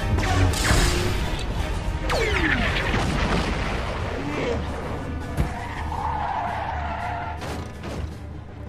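Animated-film action sound effects over music: sweeping effects with falling pitch glides about two seconds in, a sharp impact about five and a half seconds in, then a steady rushing hiss.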